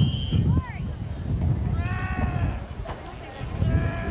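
Crowd or sideline at an outdoor football game heard through a camcorder microphone. Wind rumbles on the mic, a short high whistle sounds at the start, and drawn-out high-pitched shouts come about two seconds in and again near the end.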